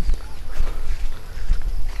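Footsteps of people walking on a dirt path, heard over a low, steady rumble on the microphone.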